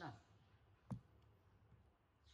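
The end of a short voiced 'ừ' with rising pitch at the very start, then a single sharp click about a second in, otherwise near silence.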